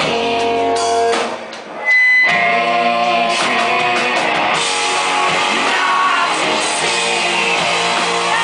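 Live rock band playing, with electric guitar, drums and sung vocals. The music drops away briefly about a second and a half in, then the full band crashes back in.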